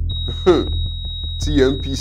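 A steady, high electronic tone, like a patient heart monitor's flatline, comes on just after the start and holds unbroken. Two brief voice sounds come through over it, about half a second and a second and a half in.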